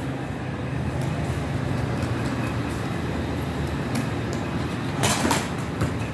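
A steady low mechanical hum, with a short scrape about five seconds in and another near the end as a metal dough scraper cuts dough on the table.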